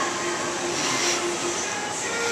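Steady rushing background noise of a restaurant dining room, with faint music playing underneath.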